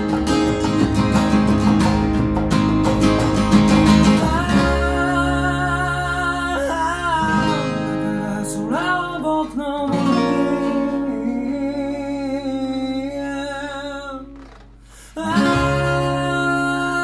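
Steel-string dreadnought acoustic guitar strummed hard and fast for the first few seconds, then held chords under a singing voice. The music drops away briefly shortly before the end, then the strumming starts again.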